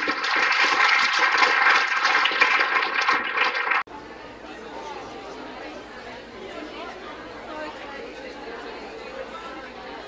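Audience applauding for about four seconds, cut off suddenly. Then a quieter murmur of audience chatter in a large room.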